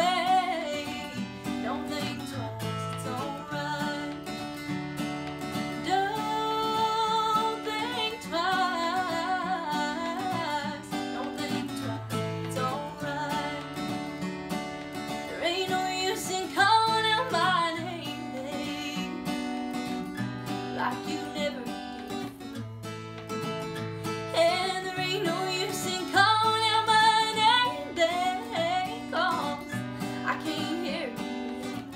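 A woman singing solo with her own strummed acoustic guitar accompaniment, the voice carrying the melody over steady chords.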